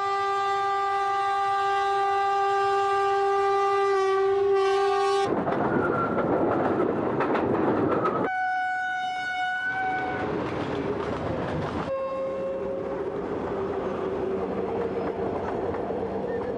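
Train horn held for about five seconds, then the rumble and clatter of a passing train. A second, shorter and higher horn blast comes about eight seconds in, followed by steady train rumble.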